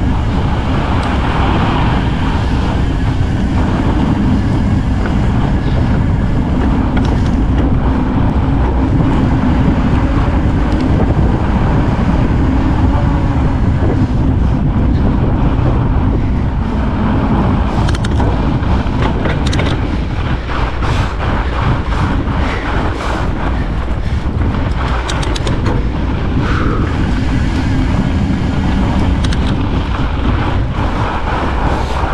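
Wind buffeting a bike-mounted GoPro Hero 10's microphone as a fat bike rolls fast down groomed snow at about 20 mph, with the fat tyres' rolling noise underneath. Scattered clicks come in the second half.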